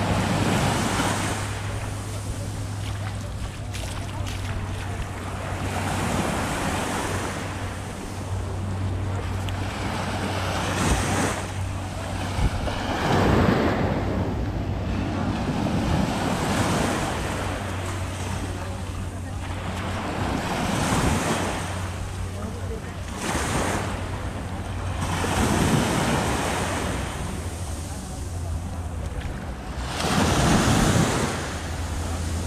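Small waves breaking and washing up onto a sandy shore, the sound swelling and fading every few seconds.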